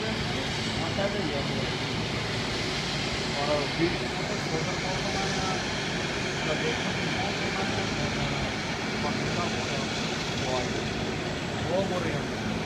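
Steady hum and rush of a twin-engine Hawaiian Airlines jet airliner taxiing past, with indistinct voices now and then.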